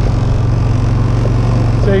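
Boat's outboard motor running steadily, a low, even engine hum.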